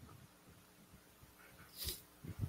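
Near-silent pause with faint room tone, broken near the end by one short, sharp breath.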